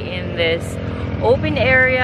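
A woman talking, with the steady low hum of ATV engines running underneath.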